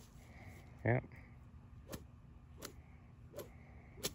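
Golf club swung one-handed down into tall grass, three short faint swishes about three quarters of a second apart as it chops through the stalks.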